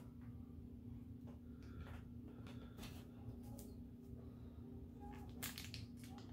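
Faint, scattered rustles and crinkles of clear plastic packaging being handled as a diecast model airliner is taken out of it, the strongest near the end, over a low steady hum.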